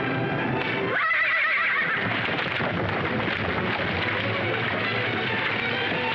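A horse whinnies once about a second in: a high, wavering call lasting about a second. Background film music plays throughout.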